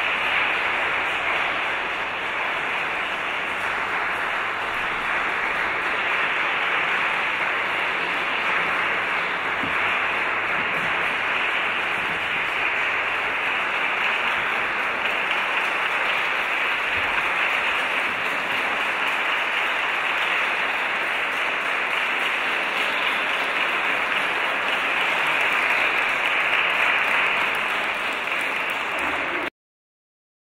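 Audience applauding, a steady dense clapping that holds for nearly half a minute and cuts off suddenly near the end.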